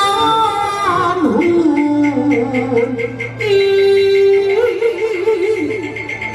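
Taiwanese opera (gezaixi) singing with live traditional accompaniment: a wavering melody with long held notes, over a light regular tick keeping time.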